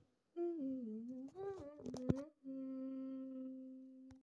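A person humming a wavering tune, with a couple of sharp clicks about two seconds in, then holding one steady note that slowly fades.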